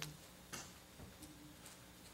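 Near silence in a quiet room, broken by a few faint, sharp, unevenly spaced clicks.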